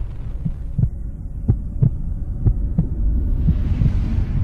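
Cinematic logo-reveal sound design: a loud, deep rumbling drone with a steady pulse of short low hits, about three a second.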